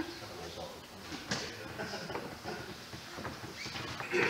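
Quiet room with faint handling noises: a few soft clicks and rustles, with low murmured voices in the background.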